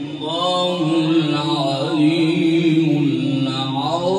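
A man reciting the Quran in a melodic, chanted style, holding long notes with short ornamented turns. A new phrase starts near the end.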